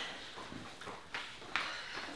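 A few faint footsteps on a hard floor, sharp knocks spaced irregularly about half a second to a second apart.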